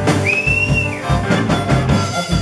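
Blues harmonica cupped against a vocal microphone, holding one long high note from about a quarter second in for most of a second, over a live rock band's drums and guitar.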